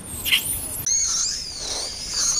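Infant long-tailed macaque screaming in distress while an adult handles it roughly: a short squeal, then, about a second in, one long, high, wavering scream.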